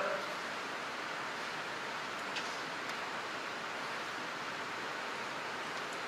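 Steady hiss of background noise on the sound-reinforcement microphone during a pause in speech, with one faint tick about two and a half seconds in.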